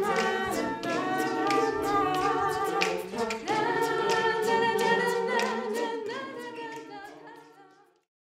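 Choir singing a cappella in sustained chords, with a short break between phrases about three seconds in. The singing then fades out to silence over the last two seconds.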